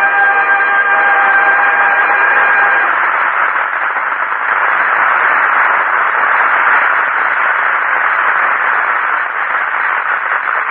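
Studio audience applauding in an old, band-limited radio broadcast recording, starting as a held musical chord ends about three seconds in.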